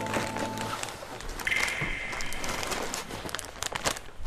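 A plastic food packet crinkling and crackling as it is pushed into a coat pocket, with the coat fabric rustling.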